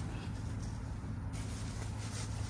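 A vehicle engine idling with a steady low hum, under faint rustling of clothing and a plastic bag being handled.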